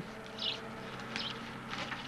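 Faint rustling and scraping of dry bulrush (gyékény) strands as a twisted strand is pushed down into the weave of a rush bed, in a few short scratches over a steady low hum.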